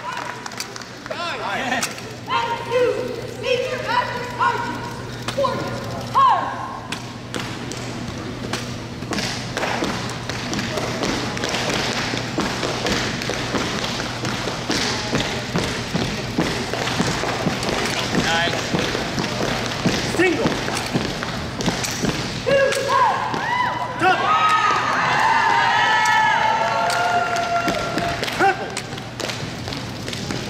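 Exhibition drill rifle being spun, tossed and caught, giving repeated sharp slaps and thuds as the rifle strikes gloved hands and body. Voices call out in bursts in the first few seconds and again from about 22 seconds in.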